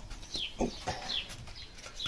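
A small bird calling over and over with short, high chirps that fall in pitch, about one a second, over light clicks and knocks of the wheel and tyre being handled.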